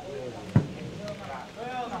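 Voices calling out, with one sharp thump about half a second in, the loudest sound.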